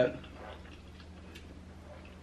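Quiet room tone with a faint steady hum and a few faint, scattered ticks, after the end of a spoken word.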